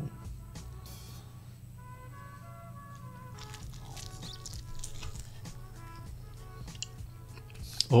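Soft background music with steady notes, and a few faint crunches about halfway through as a piece of fried chicken with a crisp batter crust is bitten into.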